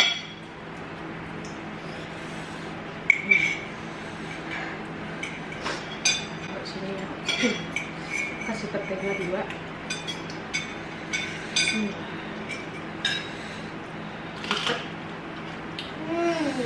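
Forks clinking and scraping against bowls as people eat, in irregular, scattered clinks; the sharpest ones come about three seconds in and near the end. Faint mumbles can be heard under the clinks partway through.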